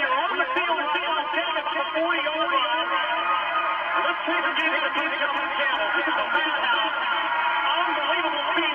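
Voices mixed with music, steady throughout, through a muffled recording with almost no high end.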